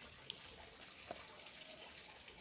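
Faint water dripping onto potting soil as freshly planted cuttings are watered lightly, with a couple of small drips; very quiet overall.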